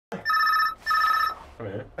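A telephone ringing in the British double-ring pattern: two short electronic trills, each about half a second, with a brief spoken remark near the end.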